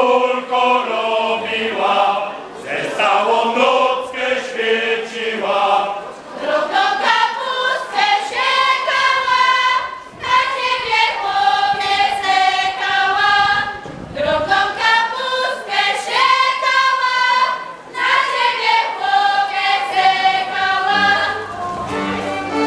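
A group of voices singing a folk song together, unaccompanied, in phrases of about four seconds, each ending on a long held note.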